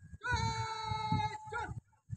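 A woman's voice calling a drawn-out parade command: one long, high, steady held syllable lasting about a second, then a short clipped syllable near the end.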